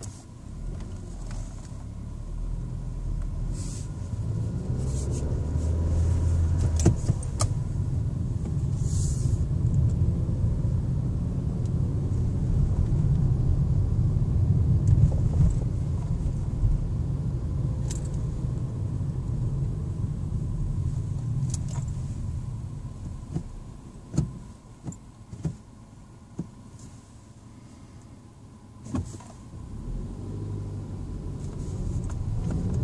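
Car driving, heard from inside the cabin: a low road and engine rumble that builds up and then eases off after about twenty seconds, followed by a quieter stretch with a few sharp clicks and rattles.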